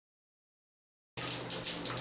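Silence for about the first half, then water running and splashing from a leaking shower valve in a tiled shower stall, uneven and hissing, with a low steady hum under it.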